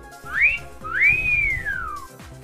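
A two-part wolf whistle: a short rising whistle, then a longer one that rises and falls away.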